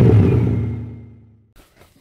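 Tail of a logo-intro sound effect: a low rumble that fades away over about a second and a half.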